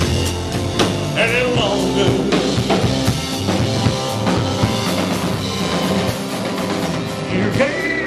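Live rock band playing a ballad between sung lines: drum kit hits over bass and electric guitar.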